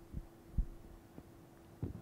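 A steady electrical hum under four soft, low thumps, the loudest a little past half a second in: handling noise on a handheld microphone.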